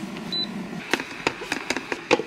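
Electric baby-bottle warmer's button giving one short high beep, followed by a run of sharp plastic clicks and knocks as the bottle is taken out of the warmer.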